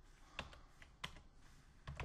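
About five faint computer keyboard keystrokes, spaced apart, as a short word is typed.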